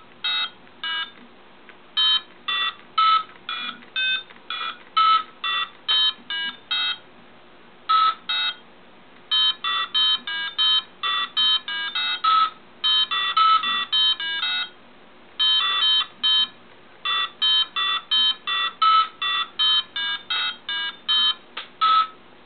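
An Arduino Diecimila driving a piezo speaker, beeping out short, raw square-wave notes of different pitches, one per key pressed on a touchscreen piano. The notes come in quick runs of several a second, with brief pauses between runs.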